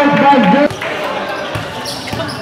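A commentator's voice talking, cutting off under a second in, then a basketball being dribbled on the hard outdoor court over the general noise of the game.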